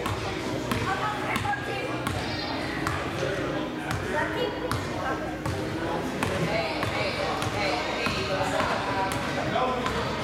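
A basketball bouncing on a hardwood gym floor at an uneven pace as a child dribbles it. Many people talking fill the echoing gym.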